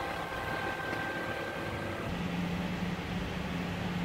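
Small cabin fans running with a steady airy whir and a thin high tone. About two seconds in, the thin tone fades and a steady low hum takes over.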